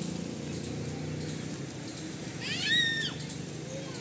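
A single short, high-pitched animal call, rising then falling in pitch, about two and a half seconds in, over a steady low background rumble.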